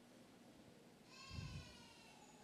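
Near silence, broken about a second in by one short, high-pitched, wavering cry from a person sobbing, with a low thump under it.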